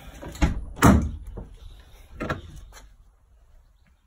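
A car door opening and being shut, with sharp knocks and thuds. The loudest comes just under a second in and another just after two seconds.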